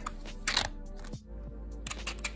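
Light plastic clicks and a short scrape about half a second in from the parts of a 3D-printed prosthetic hand as its pinned finger joints are worked.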